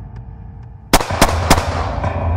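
Three revolver shots in quick succession, about a quarter to a third of a second apart, each followed by a short echoing decay.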